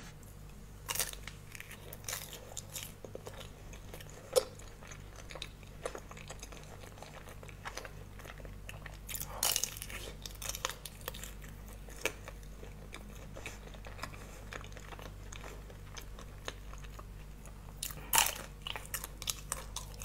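Close-miked eating: bites crack through the hard chocolate coating of a banana-shaped bar, with chewing and scattered crisp crunches, the loudest near the end. A low steady hum runs underneath.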